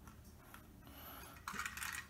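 Faint light clicks and scraping of plastic toy-train parts being handled, likely as the train is fitted onto its plastic track, with a few louder clicks near the end.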